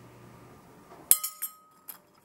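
A metal teaspoon clinks down onto a porcelain plate about a second in, ringing briefly with a clear tone, then a smaller click just before the end.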